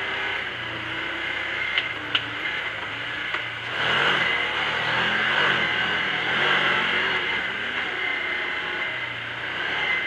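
Can-Am Commander 800 side-by-side's V-twin engine running under way on a dirt trail, heard on board, getting louder about four seconds in as it picks up. Two sharp knocks sound about two seconds in.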